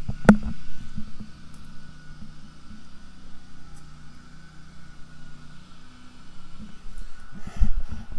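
Riding lawnmower engine running steadily in the background. A sharp knock comes shortly after the start and a few low bumps near the end.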